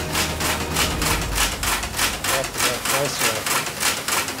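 Newman's 'Big Eureka' motor running, giving off a steady, even clicking at about six clicks a second.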